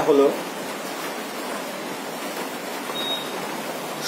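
A man's voice ends a word at the start, then a steady hiss of background noise carries on with no other sound.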